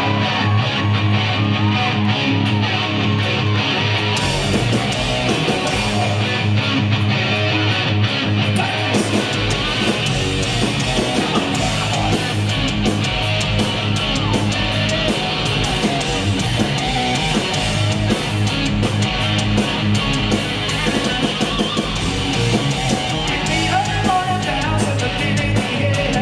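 Live rock band playing an instrumental stretch: a distorted hollow-body electric guitar riffing with bent notes over bass and drums. The cymbals come in more fully about four seconds in, and the low end fills out a few seconds later.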